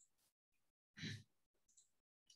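Near silence, with one short, faint breath from the speaker about halfway through.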